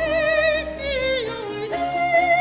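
Soprano singing a baroque opera aria with a wide vibrato, accompanied by a period-instrument ensemble. Her line falls step by step, then leaps up to a held high note near the end.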